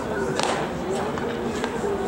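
A pitched baseball hitting the catcher's leather mitt with a sharp pop about half a second in, over a steady background of voices.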